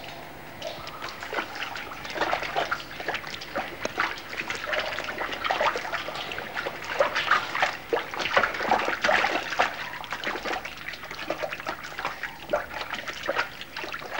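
Water splashing and trickling in a cave stream as a hand works a small container in the water, with a dense run of irregular small splashes that is thickest in the middle.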